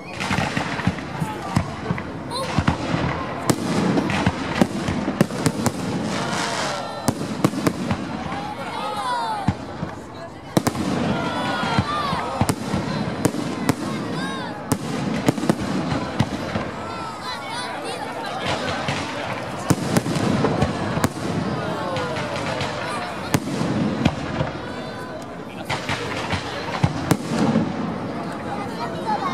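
Aerial fireworks display: a continuous barrage of shell bursts and crackling, with sharp bangs several times a second.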